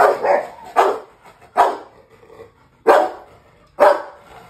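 Rottweiler barking: about five loud, deep barks at uneven intervals, with short gaps between them.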